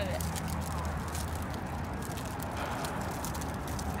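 Crinkling and crackling of the wrapper of a freeze-dried astronaut ice cream sandwich as it is peeled open by hand, over a steady low hum.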